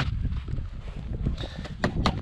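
Footsteps crunching in fresh snow, a few sharp steps mostly in the second half, over a steady low wind rumble on the microphone.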